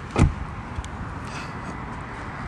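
The rear side door of a 2024 Subaru Outback being shut: one solid thud about a quarter second in, then steady outdoor background noise with a few faint clicks.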